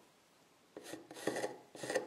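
Carpenter's pencil drawing on a ribbed wooden slat: quiet at first, then a few short scratching strokes from about the middle on.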